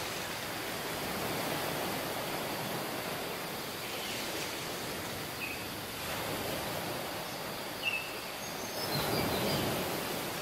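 Small surf waves breaking and washing up a sandy beach, the wash swelling about every five seconds. A few short high chirps come in the second half.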